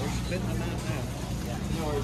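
Store background noise: a steady low hum with faint voices of other shoppers.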